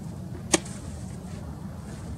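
Softball smacking into a catcher's leather mitt: one sharp pop about half a second in.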